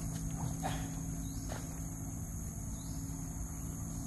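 Steady high-pitched drone of insects in long grass, over a low rumble, with a few faint short chirps and ticks.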